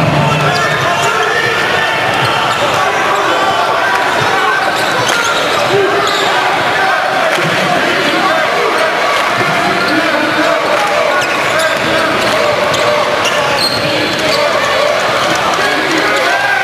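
Basketball game sound in an arena: a ball dribbling on the hardwood court against a steady wash of crowd voices echoing in the hall.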